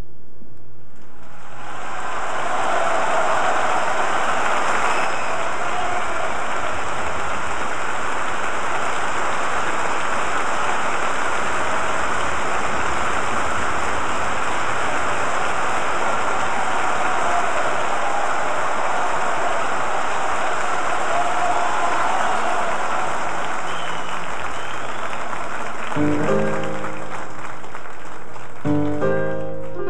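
Live concert audience applauding at length after a big-band number ends, then a piano enters near the end.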